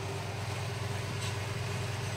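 Steady low mechanical hum with a faint constant tone above it, with no change through the moment.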